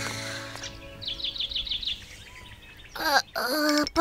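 Cartoon background music fades out. About a second in, a bird chirps a quick run of about eight short high notes, each falling in pitch, a morning cue. Near the end an animated character's voice starts to sound.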